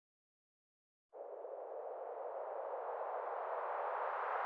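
About a second of silence, then a band of filtered synthesized noise fades in and swells steadily louder and brighter: a riser opening an electronic beat.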